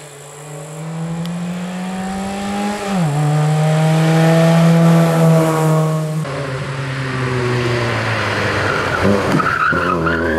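Fiat Seicento rally car's small four-cylinder engine pulling hard as it approaches, rising in pitch and getting louder, with a sudden drop in pitch at an upshift about three seconds in. Later the revs fall off and swing up and down again into a bend, with a brief tyre squeal near the end.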